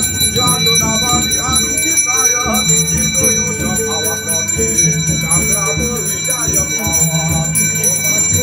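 Bells ringing steadily, with many voices chanting or singing over them.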